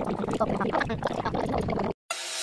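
Clear plastic bag crinkling as it is handled, a dense run of small crackles that cuts off suddenly near the end.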